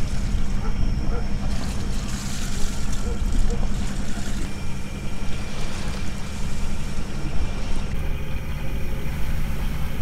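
A sailing yacht's auxiliary engine running steadily under way, a low hum with wind and water rushing past.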